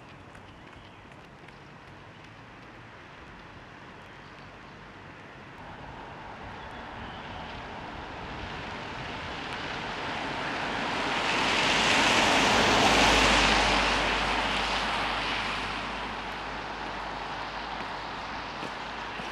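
A car driving past on a wet road: the hiss of its tyres on the wet asphalt builds over several seconds, is loudest about two-thirds of the way through with a low rumble under it, then fades away.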